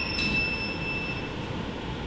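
Solo violin holding a single high note that fades out about a second in, leaving a short pause with only faint hall noise.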